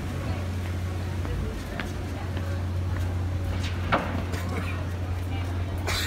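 Outdoor walking ambience of faint, indistinct voices of passers-by over a steady low hum, with a sharp click a little before the fourth second.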